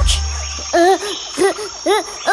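Cartoon night sound effect of an owl hooting: short rising-and-falling hoots, about one every half second, over a steady high cricket chirr. The last of the preceding song's music fades out at the very start.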